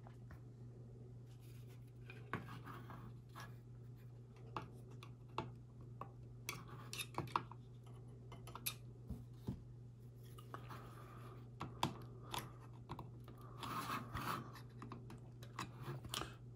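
Faint, scattered clicks and short scrapes of plastic model parts being pressed into their sockets with the tip of a flat-bladed screwdriver, over a steady low hum.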